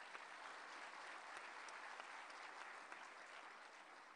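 Faint audience applause, a soft patter of many hands clapping that slowly dies away toward the end.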